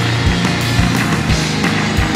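Rock band playing live: electric guitars over bass and drums keeping a steady beat, loud and dense.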